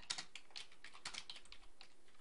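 Computer keyboard being typed on: a quick, faint run of key clicks.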